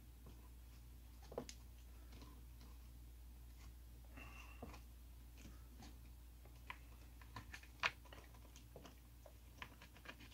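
Faint handling noise of small plastic and wire parts: scattered light clicks and ticks as a plastic wire nut is twisted onto spliced fan wires, with a short scratchy rustle about four seconds in, over a low steady hum.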